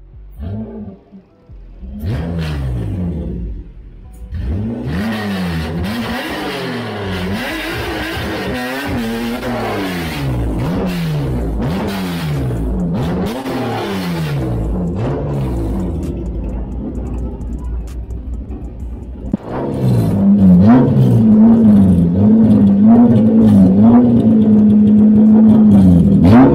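Mitsubishi Lancer drag car's engine revving in repeated up-and-down sweeps, about one a second, as it pulls through the burnout area and creeps toward the line. About twenty seconds in it gets louder and is held at a steady high rev at the starting line, waiting to launch.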